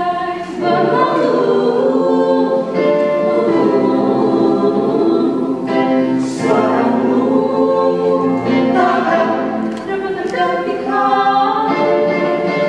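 Mixed vocal group of male and female voices singing together in harmony, holding chords that change every second or two.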